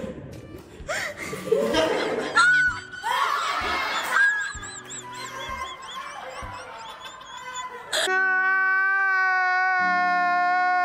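Several people laughing and shrieking. About eight seconds in, a loud edited-in meme sound cuts in: a man's drawn-out crying wail held on one pitch.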